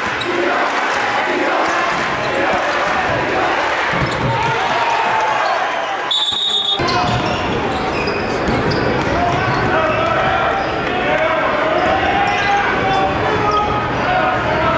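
Basketball being dribbled on a hardwood gym floor over the steady chatter of many voices in a large, echoing gym, with a brief high-pitched squeal about six seconds in.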